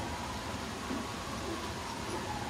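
Steady outdoor background noise with no clear event, and a faint long held tone running under it.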